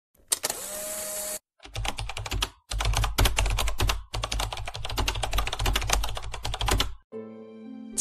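Intro sound effects: a short burst of static hiss with a steady tone, then rapid, dense clicking and crackling over a low hum in three stretches with brief gaps, ending with a short held chord.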